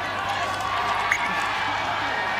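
Stadium crowd noise: many voices at once in the stands, with some cheering.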